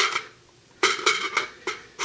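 Tapco polymer magazine clicking and knocking against a Ruger Mini-14's magazine well as it is brought back up to be seated. A sharp click at the start, then after a short pause a quick cluster of clicks with a slight ring about a second in.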